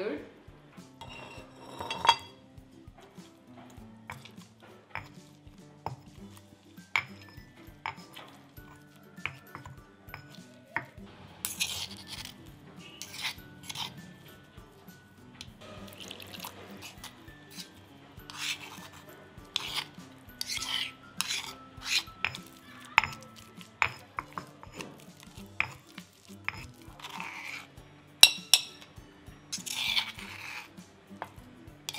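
Anishi (dried colocasia leaf) being pounded and ground to a paste in a stone mortar and pestle: repeated knocks and clinks of the pestle on stone, water poured in, and a spoon scraping the paste out of the mortar near the end. Soft background music plays underneath.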